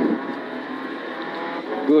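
Subaru Impreza N4 rally car's turbocharged flat-four engine running hard at steady revs, heard from inside the cabin along with tyre and road noise. A voice cuts in near the end.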